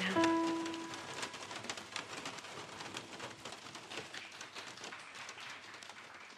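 Electric guitar accompaniment's last held notes ringing out and fading in the first second, under a crackly, rain-like noise texture that slowly fades away.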